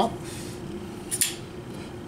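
Liong Mah Design titanium frame-lock flipper knife flicked open, the blade swinging out and locking up with one short metallic click about a second in.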